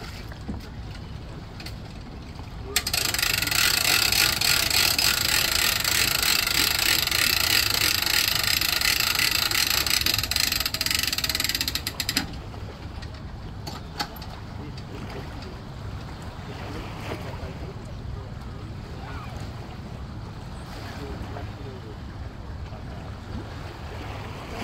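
Boat trailer winch winding in its strap as the boat is drawn onto the trailer: a loud, continuous rasp that starts about three seconds in and stops suddenly about nine seconds later.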